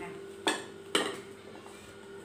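Two sharp clinks of ceramic dishes knocking together, about half a second apart, each with a brief ring.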